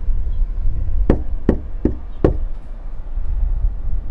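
A fist knocking on a door with the knuckles: four knocks evenly spaced about 0.4 s apart, a little after a second in, over a steady low rumble.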